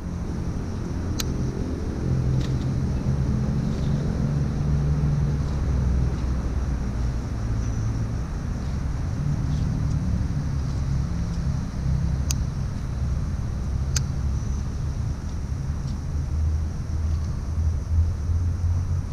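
Steady low engine rumble with a hum that shifts in pitch from time to time, like a motor vehicle running nearby, with a few faint sharp clicks.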